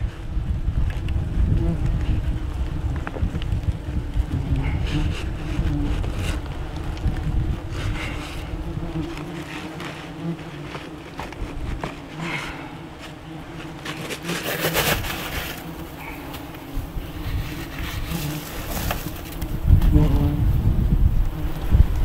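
German yellow jackets buzzing in a steady hum close to the microphone around their exposed nest, with a few brief louder noises scattered through.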